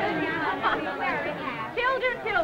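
Several people talking at once: excited group chatter, busiest at first and thinning out toward the end.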